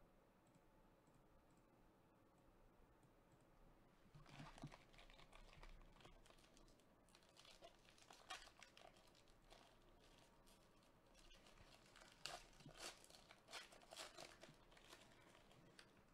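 Foil wrapper of a trading-card pack being torn open and crinkled, faint, in crackling bursts that begin about four seconds in and are loudest near the end.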